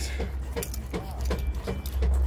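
Scattered light clicks and knocks at irregular intervals over a steady low rumble.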